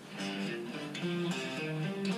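Fender Stratocaster electric guitar playing a lead lick: a quick run of single picked notes, several a second, stepping up and down in pitch.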